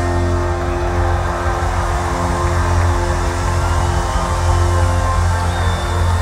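Live rock band holding a sustained chord: a steady bass note under held electric guitar and keyboard tones, loud and even throughout.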